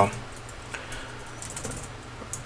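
Computer keyboard being typed on: a few soft key clicks, with a quick run of keystrokes near the end.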